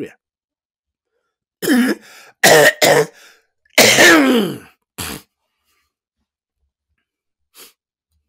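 A person coughing in a short fit: several loud coughs come in quick succession between about two and five seconds in, then one faint cough near the end.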